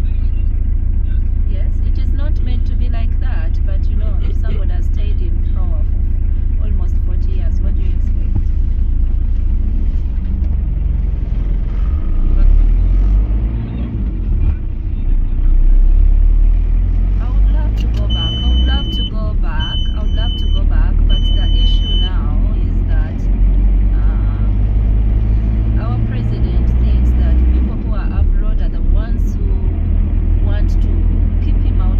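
Low engine and road rumble heard from inside a car, steady while it idles at a stop, then swelling as it pulls away and drives on about ten seconds in. Three high beeps, each about a second long, come a few seconds after it moves off.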